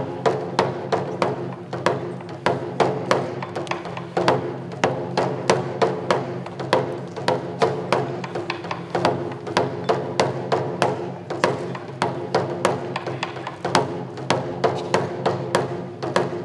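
Japanese folk festival drum accompaniment: taiko barrel drums struck in a steady rhythm, about three sharp strokes a second, with woody clicking hits, over a steady low drone.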